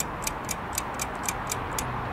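A clock ticking steadily, about four ticks a second, played as a countdown during a pause for the listener to answer.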